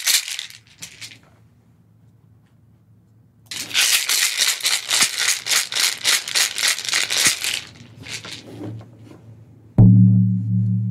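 A hand rattle shaken briskly, briefly at first and then in a fast, steady shake for about four seconds. Near the end comes one loud, deep stroke on a 17½-inch elk-hide frame drum, which rings on with a low hum.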